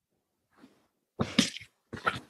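A man's short breathy vocal burst about a second in, with a few smaller breathy pulses near the end.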